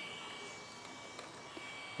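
Quiet room tone with a faint, steady high-pitched whine and one small tick about a second in.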